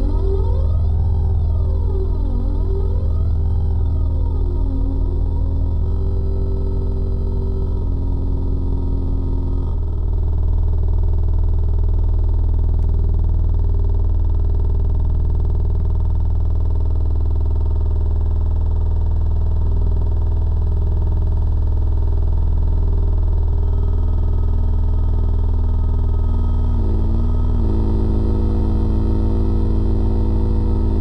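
Electronic synthesizer music: a deep, steady bass drone under a slowly shifting layer of sustained tones, with sweeping rises and falls in pitch during the first few seconds.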